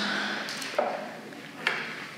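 A single sharp knock near the end, as a hand tool is handled against the wooden frame of an old chair, after a brief voice sound.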